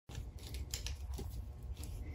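Leather leash straps rubbing and scuffing in the hands as a short braid is worked snug, a handful of soft brushing scrapes over a low steady hum.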